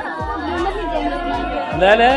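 Several people chattering at once over music, with one voice rising louder near the end.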